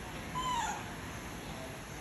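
A baby macaque gives one short, high call, falling slightly in pitch, about half a second in.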